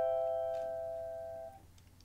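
A cavaquinho's steel strings ringing out on an A minor seventh chord with C in the bass (Am7/C), decaying steadily and dying away about a second and a half in.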